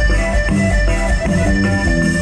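Live norteño band music played loud for dancing: sustained accordion tones over bajo sexto, bass and drums, with a steady pulsing beat.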